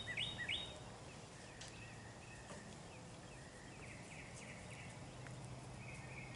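Quiet outdoor ambience: a bird gives a quick run of four or five repeated high chirps at the very start, then faint thin high calls carry on over a steady low hum.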